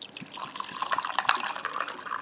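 Vodka poured from a glass bottle over ice cubes into a tumbler, a steady splashing pour with scattered sharp clicks as the glass fills.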